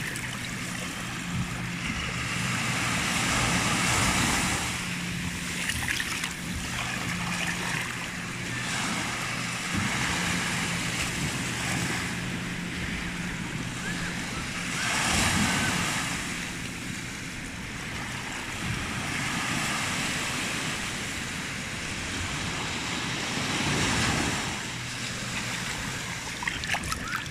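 Small waves washing up and drawing back over sand right at the water's edge, the wash swelling and easing every few seconds, loudest about four, fifteen and twenty-four seconds in.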